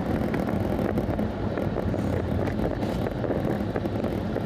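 Road and engine noise inside a moving car's cabin: a steady rumble with tyre noise and a faint steady low hum.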